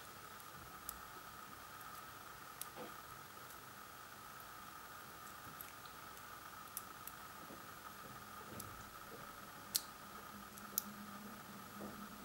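Faint scattered clicks of small parts being handled and pressed into a PGA ZIF socket, with two sharper clicks about a second apart near the end, over a faint steady hum.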